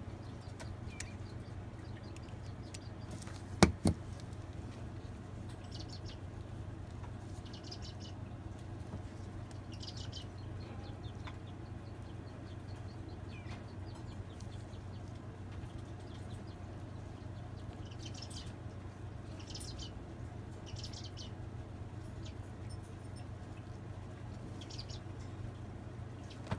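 Steady low hum in a quiet room, with faint short high chirps now and then and two sharp clicks close together about three and a half seconds in.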